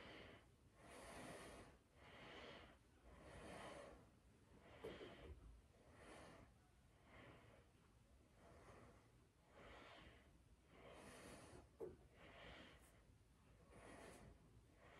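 Faint, steady breathing of a man working through an exercise, one noisy breath a little more often than once a second, with a small tick near the end. It is the breathing of physical exertion.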